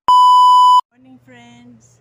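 A loud, steady test-tone beep of the kind played with television colour bars, lasting just under a second and cutting off suddenly.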